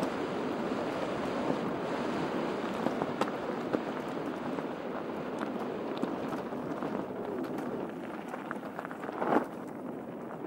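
Mountain bike rolling down a gravel track: a steady rush of tyres on loose gravel and wind on the helmet-mounted microphone, with small scattered clicks and rattles from the bike. A brief, louder scrape comes about nine and a half seconds in.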